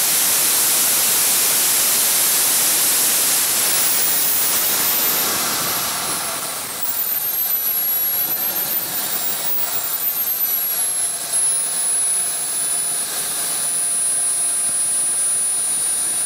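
Small RC model gas turbine engine running during its initial run-up, a loud rush with a very high whine. About a quarter of the way in the whine drops in pitch, swings back up briefly past the middle, then falls again and settles to a steady lower pitch.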